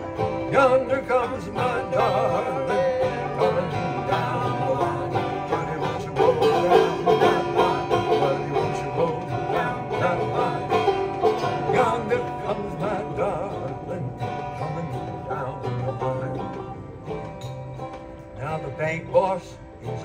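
Banjo and acoustic guitar playing together in an instrumental break of a folk song, without singing. The playing drops quieter a few seconds before the end, then picks up again.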